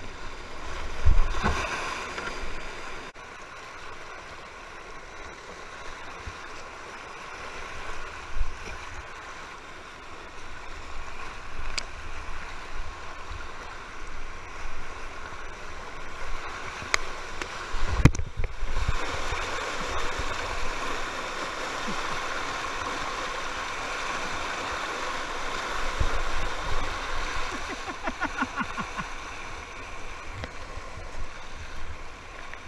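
Whitewater rapids rushing and churning around a kayak, heard close to the water, with splashing as the paddle works. A few sharp thumps cut through, the loudest about 18 seconds in.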